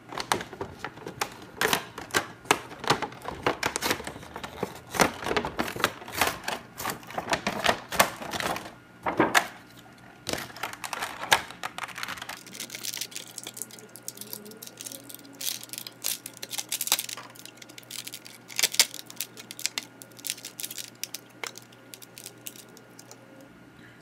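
Hands opening a toy playset's plastic packaging: clear plastic crackling and clicking, with tearing and crinkling as figurines are pulled out of the plastic insert. The clicks come thick and fast for about the first twelve seconds, then thin out to occasional handling sounds.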